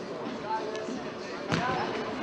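A futsal ball struck hard once, a sharp thud about one and a half seconds in, over the murmur of voices in the hall.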